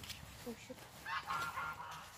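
Geese honking: a quick run of short, strange-sounding honks starting about a second in, with a couple of fainter calls before it.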